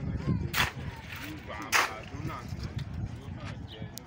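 A long-handled digging tool striking hard ground twice, two sharp blows a little over a second apart, with people talking in the background.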